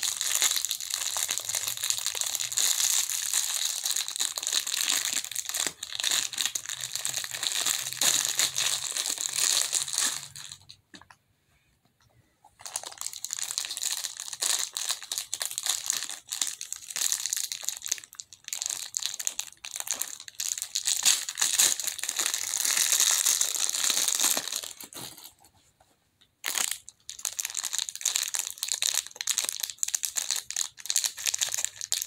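Clear plastic wrapping crinkling as hands crumple and peel it off a small squishy fidget toy, in long stretches broken by two brief pauses.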